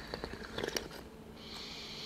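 Faint mouth and breath sounds of tea being sipped from small tasting cups: a few small clicks and lip sounds in the first second, then a long, steady, airy drawn-in breath from about one and a half seconds in.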